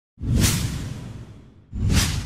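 Two whoosh sound effects with a low rumble underneath, each swelling quickly and then fading away, the second starting near the end.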